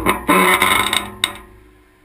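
Steel pull-up bar creaking and clanking under a person's grip, picked up through a camera clamped to the bar. After a last sharp click about a second in, the bar rings faintly and fades as the hands let go.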